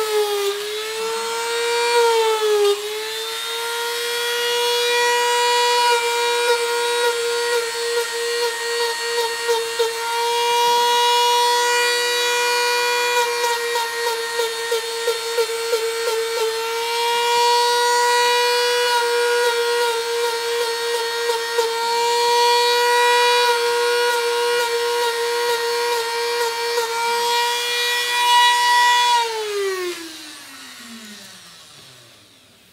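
A handheld Dremel rotary tool runs at a steady high whine as it cuts lines and stitch marks into foam. Its pitch dips briefly when the bit bears on the foam and pulses in short runs as the stitches are cut. Near the end it is switched off and spins down, the pitch falling away.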